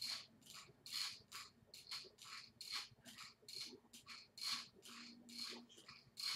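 Gazelle glider working under steady strides: a faint, regular swish-scrape from its moving arms and pivots, about two strokes a second.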